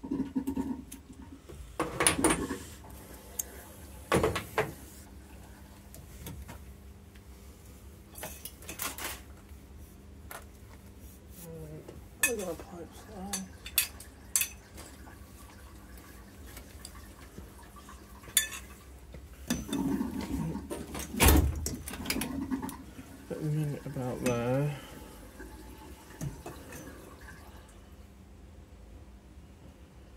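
Metal tools and copper pipe fittings being handled and set down, giving a string of sharp clinks and knocks. The loudest come about two, four and twenty-one seconds in.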